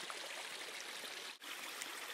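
Steady rush of running water, a spring-fed stream, heard as a continuous even background noise that drops out for an instant about one and a half seconds in.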